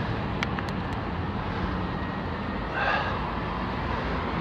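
Steady wind rush on the camera microphone with tyre and road noise from a road bike being ridden, with a few faint clicks about half a second in.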